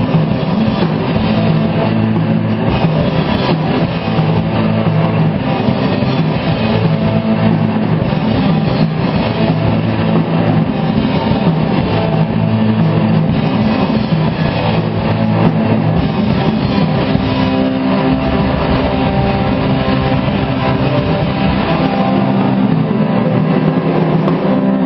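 Rock band playing live: distorted electric guitars over electric bass and a drum kit, loud and continuous.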